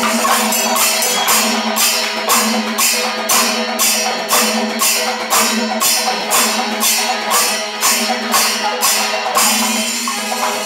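Kerala Panchavadyam temple percussion ensemble: ilathalam hand cymbals clash in a steady beat of about two to three strokes a second over maddalam barrel drumming, with a sustained low tone beneath. The cymbal beat breaks off near the end.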